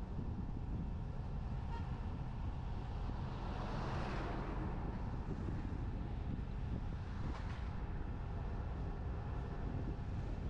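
Steady low rumble of wind and road noise on a microphone riding along a road in a moving vehicle. A hiss swells and fades about four seconds in, and a fainter one comes near the end.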